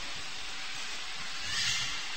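Steady hiss of the recording's background noise in a pause between speech, with a brief soft swell of higher hiss about one and a half seconds in.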